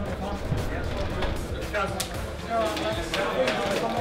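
Indistinct, overlapping men's voices and calls echoing in a concrete tunnel, with scattered sharp knocks.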